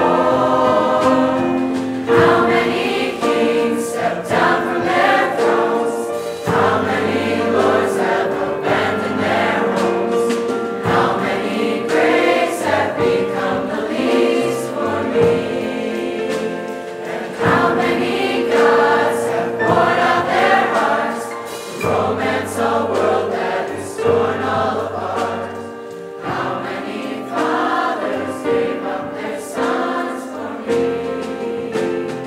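Mixed teen choir of boys and girls singing together, with long held notes.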